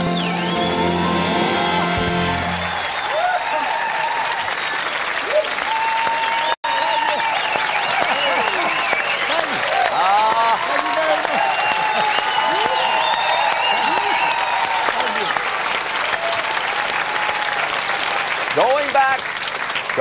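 Studio audience applauding and cheering after a song, the band's last chord ringing out over the first two seconds or so. The sound cuts out for an instant about six and a half seconds in.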